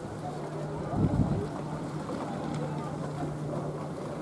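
Outdoor ambience of indistinct voices over a steady low hum, with a brief wind buffet on the microphone about a second in.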